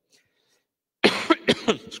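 A man coughs, a short run of two or three coughs starting about a second in, after a second of quiet.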